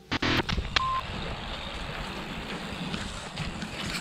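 Steady wind noise on the microphone outdoors. It is preceded by a brief clatter and a short single-pitch beep about a second in.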